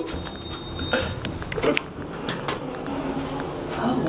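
A high, steady electronic beep lasting about a second, then scattered light clicks and knocks.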